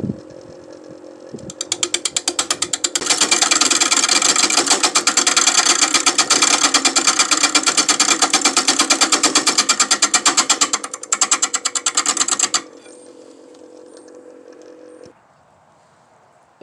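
Wood lathe running with a steady hum while a turning tool cuts a spinning black walnut bowl blank, the cut coming as a rapid, even knocking of several beats a second as the blank is roughed to shape. The cutting stops near the end, and the hum stops a couple of seconds later as the lathe is switched off.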